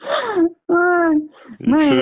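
A woman's voice making drawn-out wordless vocal sounds: a falling tone, then one held steady tone, before speech resumes near the end.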